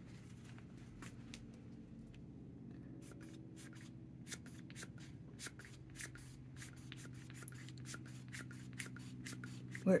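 Hands handling an ink-stained paper towel and a needle-tipped syringe: faint rubbing at first, then, from about three seconds in, a run of small irregular clicks and scratches. A steady low hum lies underneath.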